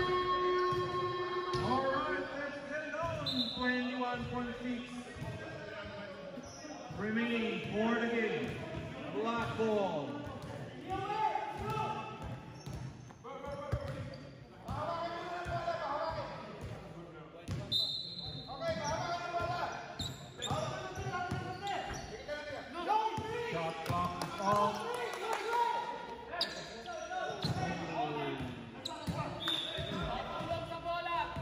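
A basketball being dribbled and bounced on an indoor court, with players' voices calling out on and off throughout, in a large sports hall.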